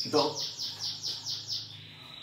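A small bird calling a quick run of about eight short, falling, high-pitched chirps, some six a second, that stops just before the end.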